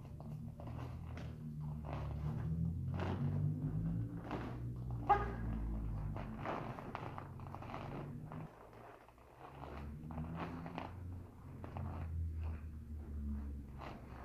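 Bare feet stepping on foam mats and a cotton taekwondo uniform snapping with each block, punch and kick of a form, a quick run of short sharp sounds with one louder snap about five seconds in.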